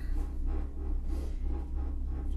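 Low, steady rumble inside a moving gondola cabin as it travels along its cable.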